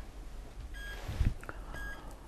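An electronic beep repeating about once a second, each beep short and high-pitched. A soft low thump about a second in.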